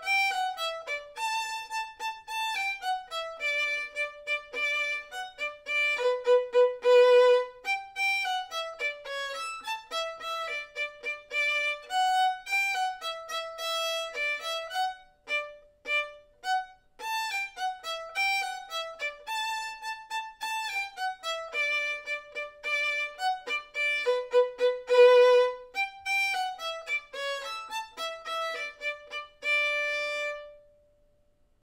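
Solo violin playing a simple march melody in short, separate bowed notes. The phrase is played through twice, with a brief break about halfway, and ends on a held note.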